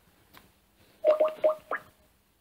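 A Skype notification sound from the laptop: four quick, bubbly blips that each rise in pitch, packed into under a second about halfway through.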